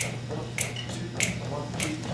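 Finger snaps at a steady beat, about one every 0.6 seconds, setting the tempo for the band before it comes in.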